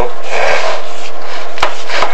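Chimney inspection camera head rubbing and scraping along the masonry flue wall as it is lowered, a rough rasping noise that ends in a single sharp click near the end.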